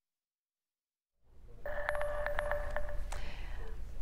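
Silence for about a second, then a newscast's transition sting: a low rumble swells in, then a steady electronic tone sounds with a quick run of sharp ticks, fading out near the end.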